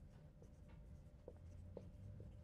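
Marker writing on a whiteboard: a few faint, short squeaking strokes over quiet room hum.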